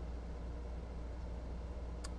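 Steady low hum with a faint even hiss: recording background noise in a pause between words.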